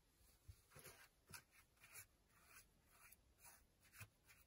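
Faint, short scraping strokes of a hand tool against the packed-earth wall of a dug-out cave, about two a second and irregular.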